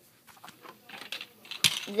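Handling noise of small hard objects: a few light clicks and taps, with one sharper click shortly before the end.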